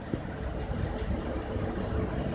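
Steady low rumbling background noise with a faint steady hum, and no speech.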